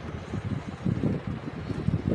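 Irregular low rumble, like wind or air buffeting the microphone.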